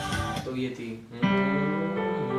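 A recorded song playing through a phone stops abruptly about half a second in. A little over a second in, a chord is struck on a Yamaha digital keyboard and its notes ring on.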